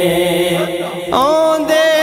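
Devotional naat singing with no instruments. A backing chorus holds a steady humming drone, and about a second in a solo male voice comes in on a long, gliding held note.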